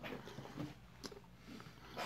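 Faint chewing and mouth sounds from someone working a jelly bean off his teeth, with a few soft clicks about a second in.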